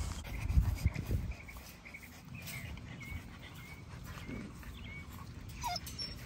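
Pit bull puppies whining: a string of short, faint, high squeaks through the middle, then a louder single yelp near the end. A few soft low thumps come in the first second.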